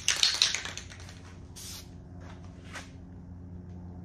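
Aerosol spray paint can: a loud clicky rattle and hiss at the start, then three short sprays spread across the next two seconds.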